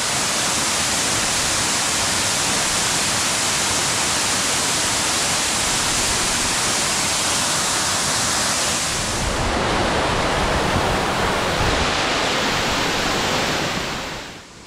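A waterfall tumbling over rock ledges into a pool: a loud, steady rush of falling water. About nine seconds in, the rush turns deeper.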